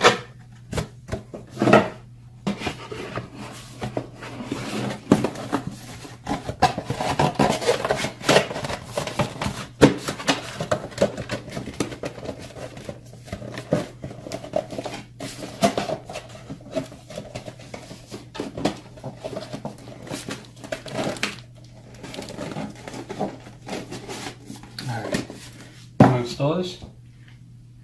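Irregular clicks, light knocks and rustles of paper and plastic being handled on a desk, over a steady low hum.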